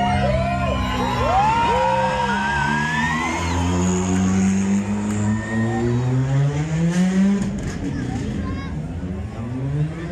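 A rally car driving past with its engine revving up, the pitch climbing steadily for several seconds and climbing again near the end. A crowd shouts and whoops over it at the start.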